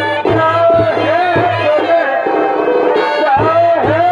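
Purulia chhau dance music: a reed pipe plays a bending, wavering melody over irregular drum strokes, with a steady low drone underneath.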